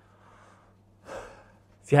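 A man's quick, audible intake of breath about a second in, over a steady low hum, with his speech starting right at the end.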